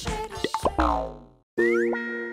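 Comic sound effects, short boing-like pitch glides, over bouncy background music. The sound stops for a moment about one and a half seconds in, then a new held chord comes in with quick rising glides.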